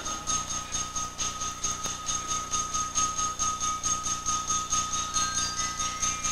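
High school concert band music: the full band breaks off, leaving a quieter passage of one held high note over an even, quick pulse of about five beats a second.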